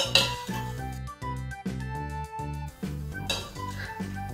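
A spoon stirring baking soda into water in a plastic measuring jug, clinking and scraping against the jug in the first half-second and again near the end, over background music with a steady beat.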